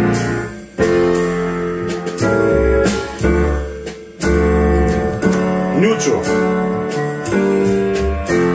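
A song played through the Accuphase E-206 integrated amplifier and loudspeakers, with chords over a strong, pulsing bass.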